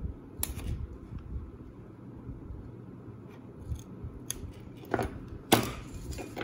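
Masking tape being cut and lifted off a plastic model hull with a hobby knife blade: quiet handling noise with a few short, sharp crackling snips and peels, the loudest about five and a half seconds in.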